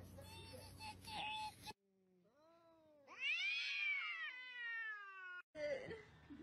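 A cat meowing: a faint call, then about three seconds in a loud, long meow that rises and then falls in pitch, cut off suddenly after about two and a half seconds.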